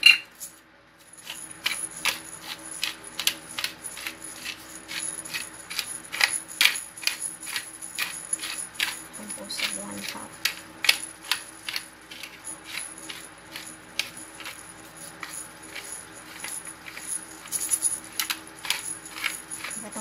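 Hand-twisted pepper mill grinding whole black peppercorns: a steady run of crisp clicks, about three a second, as the mill is turned over and over. A single sharp knock sounds right at the start.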